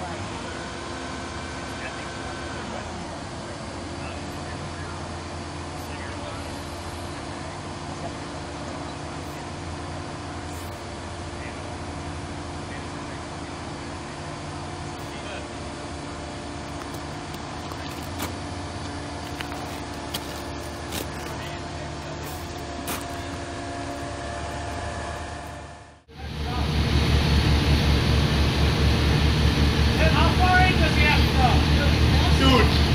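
Aerial ladder fire truck's engine running steadily while the ladder is worked, a continuous hum with a few faint clicks. About 26 seconds in it cuts out abruptly and comes back noticeably louder.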